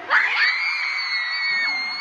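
Concert audience screaming: one shrill scream close by starts abruptly just after the start and is held on one high pitch over the crowd's cheering.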